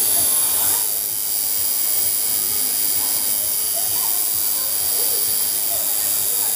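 Steady hiss with a faint high whine, unchanging throughout, with faint voices underneath.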